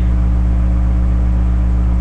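A steady low electrical hum with a faint hiss over it, unchanging throughout: the constant drone picked up by a webcam's microphone.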